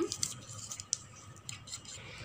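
A knife scraping against the inside edge of a steel bowl, loosening set milk cake from the sides: a few short scrapes and clicks, the sharpest about a second in.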